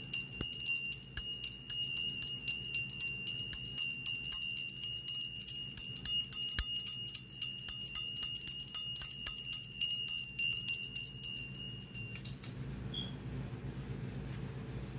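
A steady high-pitched ringing tone, several pure pitches held together, with a fast ticking running through it; it cuts off suddenly about twelve seconds in, leaving faint room hum.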